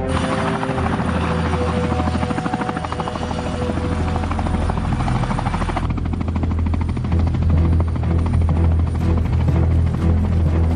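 Helicopter flying low with rapid, even rotor-blade beats, growing louder in the second half. A low sustained film-score drone runs underneath.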